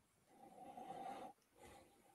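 Faint nasal sniffing as a whisky is nosed from the glass: one soft sniff lasting just under a second, then a brief second one.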